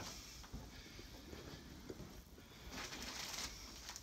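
Quiet room with a few soft footsteps on a hard floor and a brief light rustle about three seconds in, as triangular bandages are picked up.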